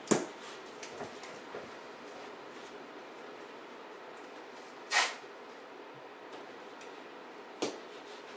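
Hand handling noise from masking tape being pulled out and pressed onto a wall: a sharp click just after the start, a brief scrape-like burst about five seconds in and another click near the end, with small ticks between, over faint steady room hiss.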